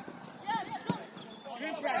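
Players shouting across a floodlit football pitch during open play, short calls about half a second in and again near the end, with a single sharp knock just under a second in.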